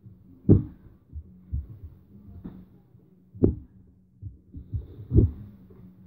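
Dull thumps of hands and feet landing on the floor during gymnastics moves: the loudest about half a second, three and a half and five seconds in, with softer knocks between. A faint steady hum runs underneath.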